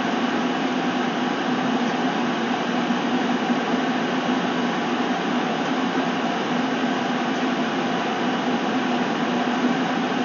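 Steady whooshing noise of a running appliance, with a low hum underneath and no change in level.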